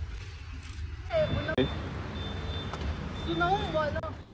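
A car's rear hatch pulled down and shut with a single thump about one and a half seconds in, over a steady low rumble.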